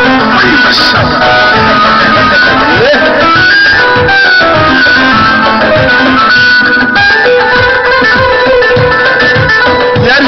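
Loud live wedding-band dance music: a plucked-string lead melody over a steady drum beat.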